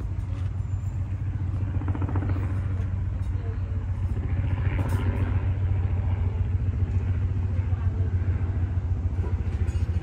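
Steady low engine rumble that slowly grows a little louder.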